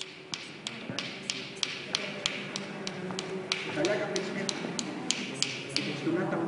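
Sharp, evenly spaced taps or clicks, about three a second, with a voice murmuring faintly beneath them near the middle.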